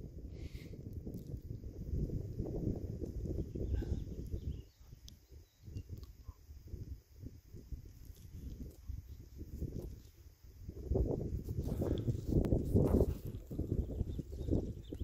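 Wind buffeting the camera microphone: an uneven low rumble that drops away briefly twice and picks up again, strongest near the end.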